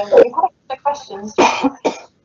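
A man coughing in a fit of several short coughs, the loudest about a second and a half in.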